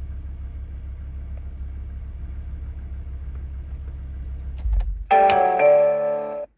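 Renault Safrane's engine idling as a steady low rumble, then switched off about five seconds in with a few clicks. A steady two-note electronic chime from the car follows near the end.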